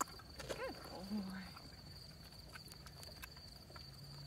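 A horse chewing a food reward, heard as faint, scattered crisp clicks, under a steady high-pitched whine.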